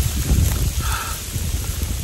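Heavy rain falling steadily, with wind buffeting the microphone in an uneven low rumble.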